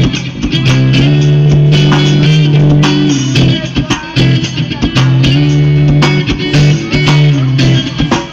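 Live band playing loud music, with guitar and a strong bass line over regular drum hits.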